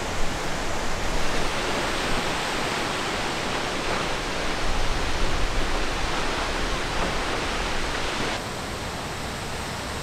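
Steady rushing of Multnomah Falls, a dense, even noise of falling water that drops a little in level about eight seconds in.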